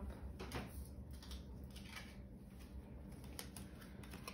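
Faint handling of tarot cards: a few soft taps and rustles as a card is drawn from the deck, over a low room hum.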